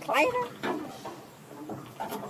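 Baby macaque giving a short, rising squealing call just after the start, then quieter sounds.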